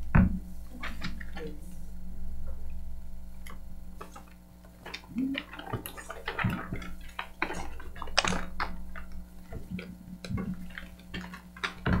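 Papers rustling and small knocks and clicks of items handled on a conference table, irregular throughout, over a steady electrical hum.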